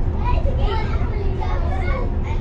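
Passengers' voices talking, over the steady low rumble of a city bus moving at speed.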